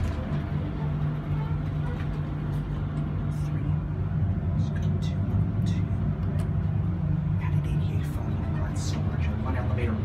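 Steady low hum inside an old hydraulic elevator cab, with a few light clicks.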